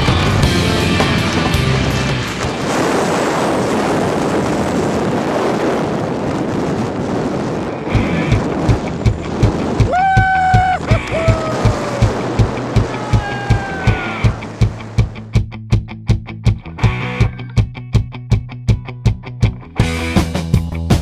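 Rock music soundtrack: a dense, noisy passage for about the first eight seconds, then a steady drum beat of roughly two hits a second with a few sliding guitar notes.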